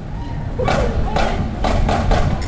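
Marching band drum line playing a street beat between tunes, with drum hits at a steady marching pace of about two a second and no brass playing.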